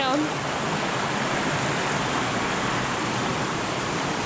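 Steady rush of water from a low, wide river waterfall and the riffles below it, an even noise with no breaks. A voice trails off at the very start.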